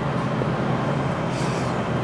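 Steady low hum of restaurant background noise, with a brief soft rustle or scrape about one and a half seconds in.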